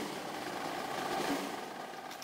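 Steady outdoor background noise of the procession crowd, with no distinct voices or impacts, slowly fading out near the end.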